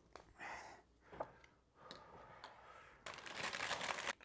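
Soft rustling and handling noises, then, about three seconds in, a crinkly plastic snack bag being rummaged through by hand, the loudest sound.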